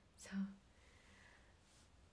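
A woman's voice saying a short, breathy "saa" about a quarter second in, then near silence: room tone.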